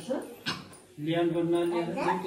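A drawn-out whiny vocal sound from a person: a short rising cry, then one note held steadily for about a second near the end.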